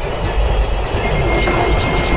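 Loud, steady rumbling noise with a thin high tone that sets in about halfway through.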